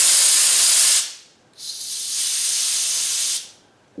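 Compressed air hissing out of a homemade compressor's fire-extinguisher air tank through a hand-opened release valve, venting the tank's pressure. The hiss stops about a second in, starts again after a short pause, and stops again shortly before the end.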